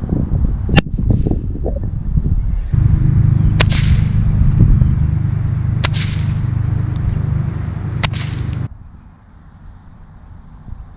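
Puff Adder pocket snake whip cracking four times with sharp reports. A single towel crack comes about a second in, then three cattleman's cracks follow about two seconds apart over a steady low rumble that cuts in and out abruptly.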